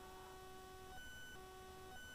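Near silence with a faint, steady electrical hum of several thin tones. About a second in, the lower tones drop out for a moment while higher ones sound, then the lower tones return.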